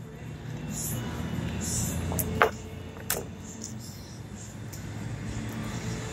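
A low vehicle engine rumble swells over the first two seconds and then holds steady. Over it are short rustles of a paper food wrapper and two brief sharp sounds around the middle.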